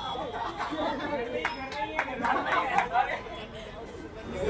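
A group of people chattering and talking over one another, with a few short sharp knocks in the middle.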